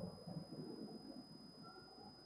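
Faint room noise in a pause between speech: a low murmur that grows a little louder in the second half.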